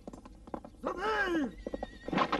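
A horse neighs once about a second in, a short whinny that rises then falls in pitch. Light hoof clicks come before and after it.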